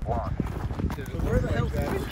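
Footsteps crunching over dry, cracked lakebed crust in irregular thuds, with wind rumbling on the microphone and faint voices.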